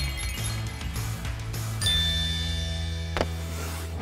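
Background music with a steady low bass line, and a bright ringing ding that starts suddenly about two seconds in and dies away slowly; a short click sounds a little after three seconds.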